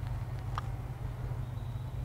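Low wind rumble on the microphone, with a faint click within the first second as a putter strikes a golf ball.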